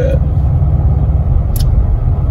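Steady low rumble of a car's cabin, road and engine noise, with a short click about one and a half seconds in.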